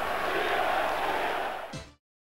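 Football stadium crowd noise: a steady din of many voices, fading away and cutting off near the end.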